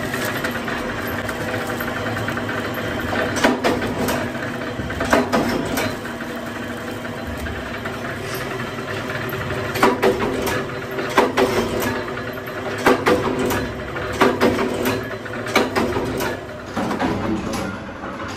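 A machine running with a steady hum, over which thin plastic bags crackle sharply again and again as rubber drum bushes are packed into them by hand.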